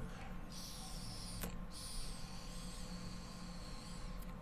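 A long, faint draw on a 10 Motives disposable e-cigarette with a very airy draw: a thin, high whistling hiss of air through the device from about half a second in until near the end, with one small click partway through.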